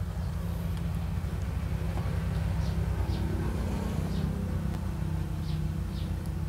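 Electric rotating display stand (bonsai turntable) running, a steady low motor hum as it slowly turns the potted tree.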